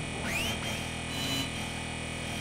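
Experimental synthesizer drone: a dense bed of steady tones, with a high pitch that sweeps upward about a quarter second in and then holds.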